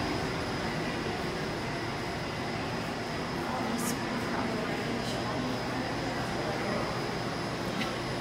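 Steady mechanical hum and hiss of indoor ambience, with faint indistinct voices and a couple of light clicks.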